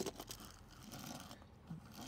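Faint scuffs and light clicks of a small plastic toy rocket being pushed by hand across a hardwood floor.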